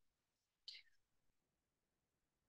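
Near silence, broken by one brief, faint hiss a little under a second in.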